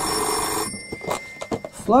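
A telephone ringing, a loud burst that stops about two-thirds of a second in, followed by a few short clicks.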